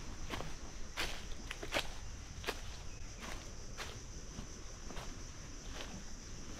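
Footsteps of a hiker walking on a dirt jungle trail covered in fallen leaves, an irregular series of short steps over a steady outdoor background.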